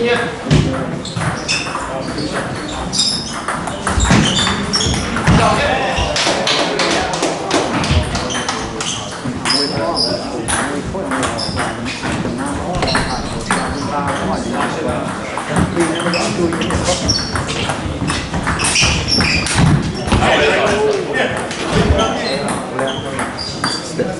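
Indistinct chatter of players and onlookers echoing in a large hall, with scattered sharp taps of a table tennis ball and paddles.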